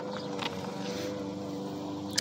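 Lawn mower engine running steadily.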